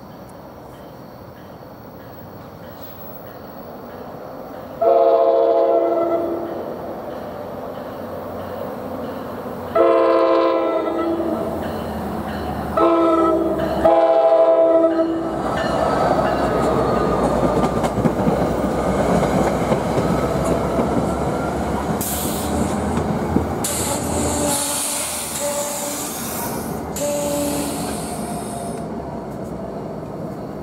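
NJ Transit diesel locomotive sounding its horn in the long-long-short-long crossing pattern as it approaches, then the locomotive and its coaches rumble past at close range, wheels clicking over the rails.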